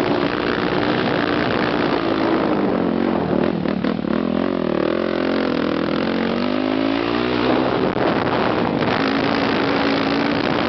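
Motocross bike engine running under way on a dirt track, heard close from on the bike: its pitch drops as the throttle is backed off about three to four seconds in, wavers and climbs back up, and settles at higher revs near the end, over a steady rush of noise.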